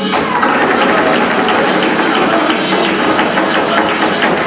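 Rapid flamenco footwork (zapateado) and palmas handclaps over flamenco guitar, a dense run of sharp strikes starting suddenly.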